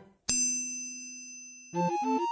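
A single bright, bell-like ding, struck once and ringing out for about a second and a half before music comes back in.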